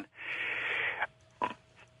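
A man's breath, about a second long, on a narrow-band radio or phone line, followed by near quiet with one brief faint sound.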